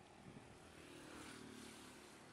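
Near silence with the faint hum of a passing motor vehicle, swelling a little past the middle.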